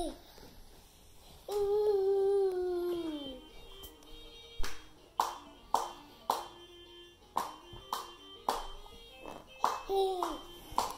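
A long held vocal sound that slides down in pitch at its end, then steady hand claps about two a second over a faint stepping tune.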